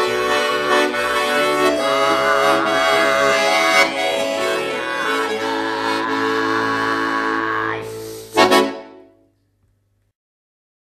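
Bayan (Russian button accordion) playing sustained, wavering chords. Near the end it closes on a short, loud final chord that dies away.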